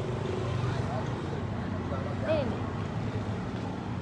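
Steady low hum and rumble of background noise, with a brief faint voice about two seconds in.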